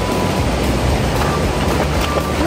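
Steady rush of a shallow river, with a dog splashing as it wades through the water.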